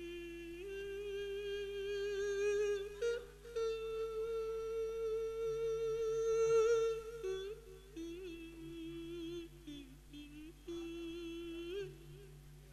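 A monk's voice, amplified through a microphone, singing long drawn-out held notes in the Isan sung-sermon (thet lae) style. The pitch steps up twice in the first few seconds, breaks into shorter wavering notes past the middle, and settles into one more long held note near the end.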